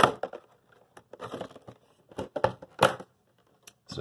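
Plastic and cardboard action-figure packaging being handled and opened: a run of irregular crinkles, taps and clicks, the sharpest a little before three seconds in.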